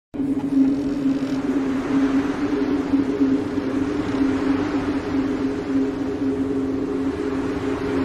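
A steady low drone of two held tones with a rushing hiss over it. It starts abruptly just after the start and holds at an even level throughout.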